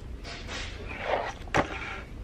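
Handling noise at a desk: a rustling slide that swells for about a second, then one sharp knock about a second and a half in.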